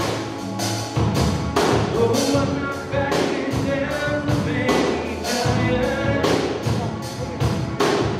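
Live worship band playing a song: electric guitar, bass and a drum kit keeping a steady beat of about two strikes a second.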